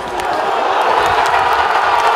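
Stadium crowd cheering and roaring at a goal for the home side.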